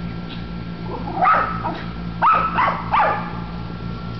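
West Highland white terriers barking: four short barks, one about a second in and three in quick succession between two and three seconds in.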